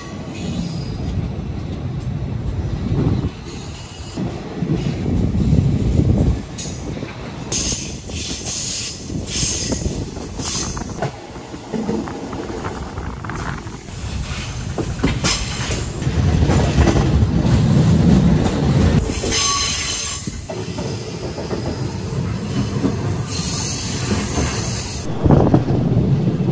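Passenger train coaches running along the track, heard from an open doorway: a continuous low rumble of wheels on rails, with a high-pitched noise that comes and goes several times.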